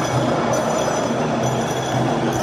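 Escalator running under the camera, a steady mechanical rumble, mixed with the constant din of a crowded shopping mall.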